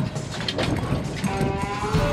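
Wind buffeting the microphone and water rushing along the hull of a moving boat, with gusts and knocks. About a second and a half in, held music tones begin over it.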